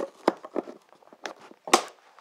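A small utility knife picking and scraping at a tough plastic packing strap on a cardboard box, giving a handful of sharp clicks, the loudest near the end; the strap does not give.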